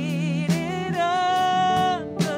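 Live worship band playing: a vocalist sings over keyboard, drums and electric guitars, holding one long steady note through the second half.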